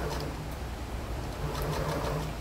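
Electric sewing machine motor running with a low hum, stopping shortly after the start and starting up again about a second and a half in.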